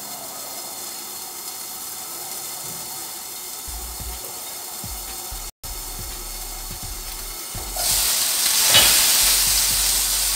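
A burger patty is laid into hot oil in a frying pan about eight seconds in and sizzles loudly. Before that there is only a faint steady hiss from the pan.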